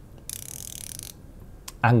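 Ceramic-insert dive bezel of a Tissot Seastar 2000 being turned by hand, ratcheting through a quick run of clicks for about a second, then a few single clicks. A bit rough, clicky and very noisy.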